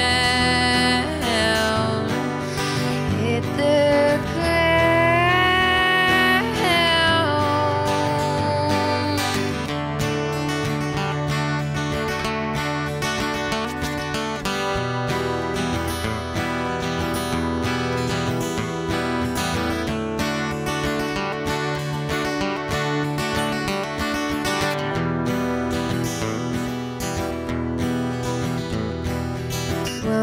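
Solo acoustic guitar played in a steady rhythm. For the first several seconds a woman's voice sings long, sliding notes over it, then the guitar carries on alone as an instrumental passage.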